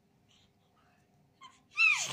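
A baby's short, high-pitched squeal that falls in pitch near the end, with a faint little squeak just before it.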